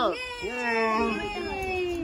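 A high-pitched voice making two drawn-out sounds: a short one falling in pitch, then a long one that rises and slowly sinks.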